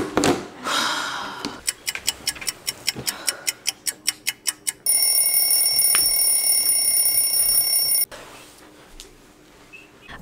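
A short noise at the very start, then a clock ticking quickly, about five ticks a second, followed by a steady electronic alarm ring for about three seconds that cuts off suddenly: an edited-in time-skip sound effect.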